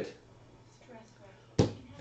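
A single sharp knock of an object set down on a tabletop, about one and a half seconds in.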